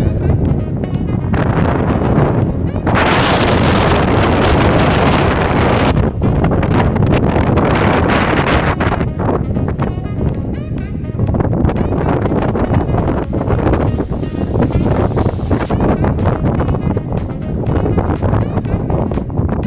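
Wind buffeting the microphone in loud gusts, broadest and strongest for several seconds in the middle, with a constant low rumble.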